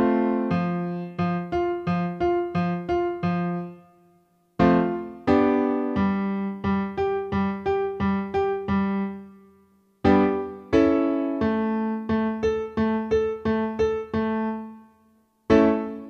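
Piano accompaniment for a vocal warm-up exercise. Each pattern opens with a struck chord followed by about eight short notes, then stops. The pattern starts again a step higher about every five and a half seconds: near 5 s in, near 10 s in, and just before the end.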